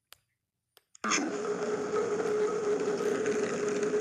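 A few faint clicks, then about a second in a steady noise with a constant hum starts suddenly and carries on.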